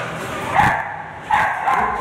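Dogs yipping and barking in two short outbursts, one about half a second in and a longer one after about a second.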